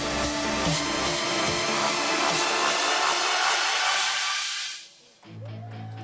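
Trailer music swelling into a dense rushing wash that fades away about five seconds in, followed by a steady low tone under the title card.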